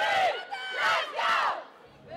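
Women footballers in a team huddle shouting a rallying cry together, three short loud group shouts that stop about a second and a half in.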